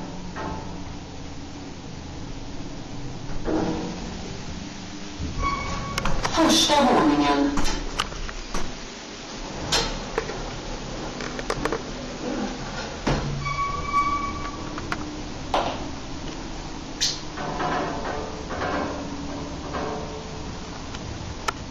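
Interior of a modernized ASEA passenger lift in operation: a short electronic beep sounds twice, about five and fourteen seconds in. Near six seconds a loud sweep falls in pitch, and sharp clicks and clunks from the car and its doors are scattered through the middle.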